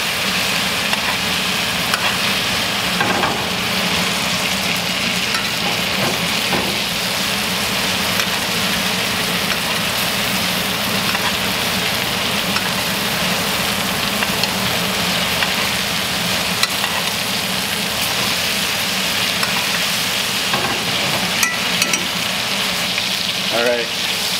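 Steaks and foaming butter sizzling steadily in a hot cast-iron skillet as a spoon bastes the melted butter over the meat, with a few light clicks of the spoon against the pan.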